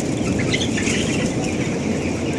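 A large flock of young broiler chickens, about seventeen days old, making scattered short chirps and clucks over a steady, dense background rush from the tunnel-ventilated broiler house.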